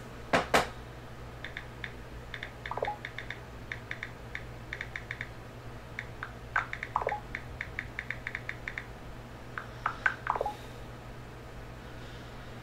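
Computer keyboard being typed on in bursts of quick clicks, with two louder clicks just after the start. Three or four short falling whines are scattered between the bursts.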